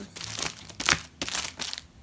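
Clear plastic packaging around stacked zines and envelopes crinkling as the packs are handled and shifted, in several bursts, loudest about a second in.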